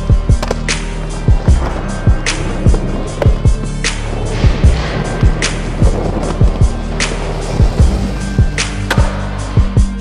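Skateboard rolling and clacking on wooden skatepark ramps, with sharp board knocks and landings throughout, over a music track with sustained low notes.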